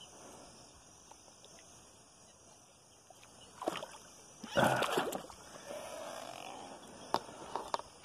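Water splashing beside a kayak with handling noise, a short burst about four and a half seconds in after a few quiet seconds, followed by a few sharp clicks near the end.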